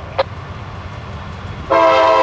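Air horn of a CSX GE AC4400CW diesel locomotive sounding: a loud, steady multi-note chord that starts suddenly near the end, over the low rumble of the slow-moving freight train.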